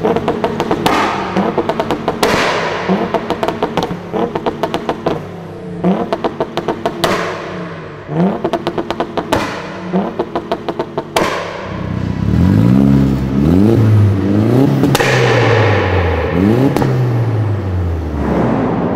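Tuned Audi RS4 Avant's engine blipped every couple of seconds, each short rev followed by a rapid string of exhaust pops and crackles. About eleven seconds in, a Volkswagen Polo engine is revved up and down repeatedly in steady rises and drops, without pops.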